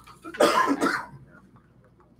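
A woman coughs once, loudly, into a handheld microphone, followed by quiet room tone.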